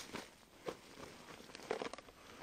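Faint rustling and a few soft clicks of a fabric backpack being handled on stony ground, with one click about two-thirds of a second in and a few more near the end.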